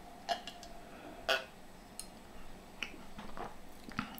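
A person sipping and swallowing from a drinking glass: a few soft, separate clicks and gulps, the loudest about a second in, and a light knock near the end as the glass is set down.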